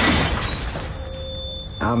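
A sudden crash of noise that dies away within about half a second, followed by a faint held tone; a man's voice comes in near the end.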